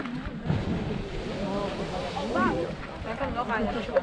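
Strokkur geyser erupting: a rushing burst of water and steam that starts suddenly and keeps going, with spectators' excited voices over it.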